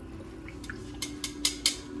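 Frybread dough sizzling in hot oil in a pot, with a quick run of sharp metallic clicks from steel tongs a little past a second in.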